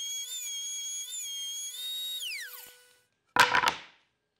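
Table-mounted router running with a steady high whine while cutting a dado in plywood, the pitch dipping slightly under load. About two seconds in it is switched off and the whine falls steeply in pitch as the bit spins down. Near the end there is a brief, loud clatter.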